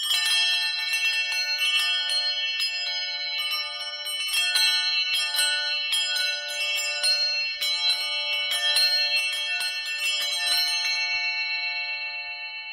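Church bells ringing, many quick, irregular strikes on several high notes that overlap and ring on; about eleven seconds in the strikes stop and the bells keep ringing, fading.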